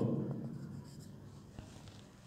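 Marker pen writing on a whiteboard: faint strokes with a few small ticks as a line of Bengali words is written. A spoken word trails off at the very start.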